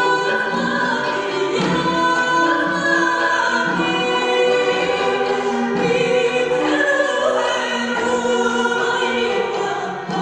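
A woman singing an Armenian folk song in sustained, ornamented phrases, accompanied by a traditional folk instrumental ensemble.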